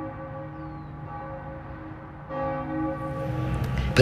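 A church bell ringing: one stroke rings on and fades, then the bell is struck again a little over two seconds in.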